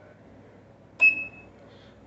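Kikusui TOS3200 leakage current tester giving a single short high-pitched beep about a second in, which marks the end of its 10-second test with a PASS result: 10 µA, below the 500 µA upper limit.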